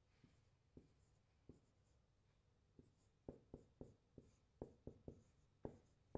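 Faint marker strokes on a whiteboard as a line of text is written: short taps and scratches, a few scattered at first, then a quicker series from about halfway.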